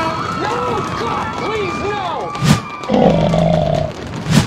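Animated characters' voice effects: a run of short calls that swoop up and down in pitch, then a sharp hit about two and a half seconds in, then a longer, coarse held call near the end.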